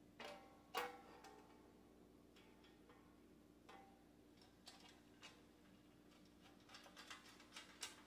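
Faint scattered clicks and ticks of screws being worked into a steel TV-mount bracket, with one louder click about a second in and a run of quick ticks near the end, over a low steady hum.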